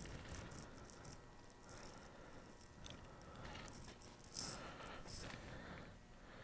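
Faint rustling and light rattling of handling noise, with two brief louder scrapes about four and a half and five seconds in.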